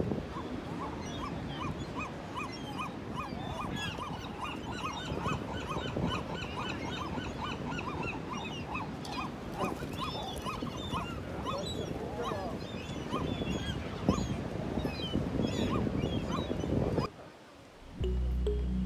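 Seagulls calling: a long run of repeated yelping notes, about three a second, with other gull cries scattered over a steady background rush. The calls thin out after about twelve seconds and the sound cuts off suddenly about a second before the end.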